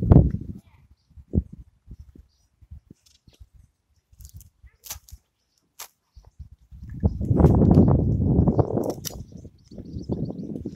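Half-moon edging tool being pushed into turf and soil, slicing through the grass: a dull thud at the start, a few small clicks, then a longer rough crunching noise for about two and a half seconds from about seven seconds in.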